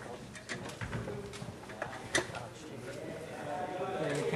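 Indistinct background chatter in a room, broken by scattered sharp clicks and knocks, the loudest about two seconds in. A voice grows louder near the end.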